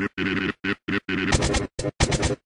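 Heavily edited logo jingle audio chopped into rapid stuttering repeats: short loud bursts about four a second with brief silent gaps between them. A little past halfway the repeats turn brighter, harsher and choppier.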